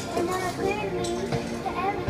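A young girl's voice into a karaoke microphone, singing or chanting along to a backing track, with other children's voices in the room.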